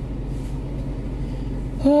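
Steady low hum inside a car's cabin, with a woman's "whew" near the end.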